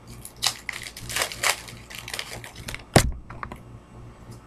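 Rustling and crinkling from trading cards and their pack wrapper being handled, in a few short bursts, with one sharp tap about three seconds in.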